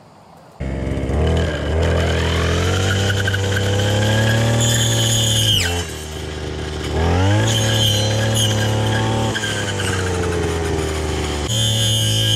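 58cc two-stroke brush cutter engine starting suddenly about half a second in and revving to full throttle, dropping back about halfway through, then revving up again, with a second drop near the end. Each drop in throttle brings a sharp falling whine.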